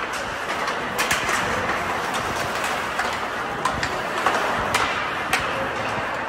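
Ice hockey play: a steady scraping of skate blades on the ice, broken by irregular sharp clacks of sticks and puck.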